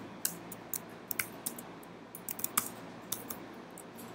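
Computer keyboard being typed on: irregular, scattered keystroke clicks as code is entered.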